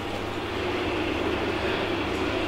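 Steady rumbling background noise with a low hum underneath, swelling slightly and holding even.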